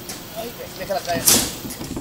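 Plywood subfloor sheet being set down onto wooden I-joists amid construction-site noise, with one short, sharp hissing knock about a second and a half in.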